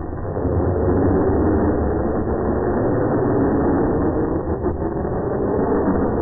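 Drag racing car's engine at full throttle as it launches off the start line and accelerates down the strip, loud and steady after a brief dip at the launch.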